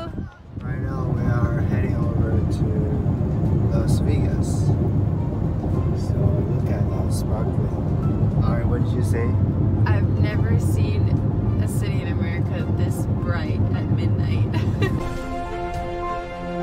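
Steady low road rumble inside a car moving along a highway, with a voice talking over it. Music takes over near the end.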